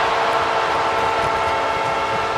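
Arena goal horn blaring with several steady held tones over a cheering hockey crowd, signalling a home-team goal.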